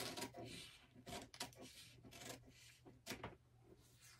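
Scissors cutting through pattern paper: a string of faint, irregular snips with a light paper rustle.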